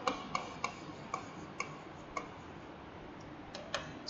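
About eight light, irregularly spaced clicks from pen strokes being made on a digital writing surface during handwriting, over faint background hiss.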